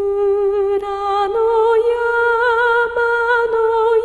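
A woman's solo voice singing a slow traditional Japanese lullaby, holding long notes with a slight waver; the pitch steps up about a second in and holds.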